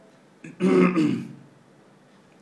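A man clearing his throat once, about half a second in, a short rough burst lasting under a second.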